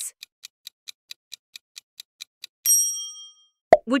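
Quiz countdown-timer sound effect: rapid clock ticks, about five a second, for a little over two seconds. It ends in a bright bell ding that rings for about a second, marking that the time for the answer is up.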